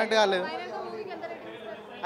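Speech only: a short spoken question, then softer overlapping chatter from a group of people standing nearby.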